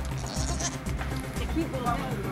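A goat bleating.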